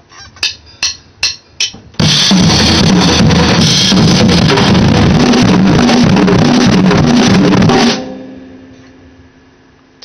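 Acoustic drum kit: about four sharp count-in clicks, evenly spaced, then a fast, loud intro pattern on bass drum, snare and cymbals for about six seconds. It ends about two seconds from the end on a last hit that rings out and fades away.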